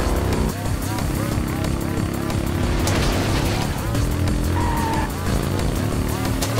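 Dramatic film background score of held chords and gliding vocal-like lines, with a motorcycle engine running under it as the bike rides along.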